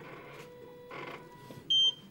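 Prototype ventilator giving one short, high-pitched electronic beep near the end. Its beeps come about every two and a half seconds, following the breathing rate, which has just been turned up to 24 a minute.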